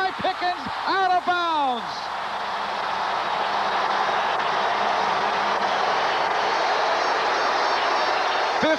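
Stadium crowd cheering in a steady roar for a long touchdown pass, after an excited shouted call from the play-by-play announcer in the first two seconds.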